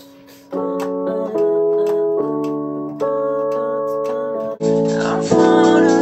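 Held chords played on a keyboard, each one steady and changing about every second. There is a short dropout about three-quarters of the way through, then the chords come back louder and fuller.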